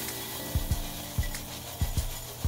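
Rice Krispies Treats cereal pieces poured from the box into a glass bowl, a steady dry rattling rustle as the puffed pieces pile up.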